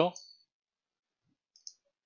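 A man's voice trails off at the start, then near silence with a single faint short click about one and a half seconds in.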